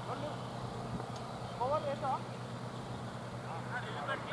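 Short, distant shouted calls from players on a cricket field, one burst about a second and a half in and more starting near the end, over a steady low hum.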